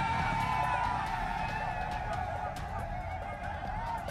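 A horn sounding in one long, steady blast that fades near the end.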